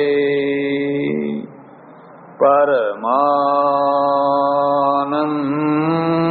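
Slow devotional Sanskrit chanting of a guru prayer: a voice holds long, steady sung notes. It stops for a breath about a second and a half in, then resumes with a brief dip in pitch and holds the next note.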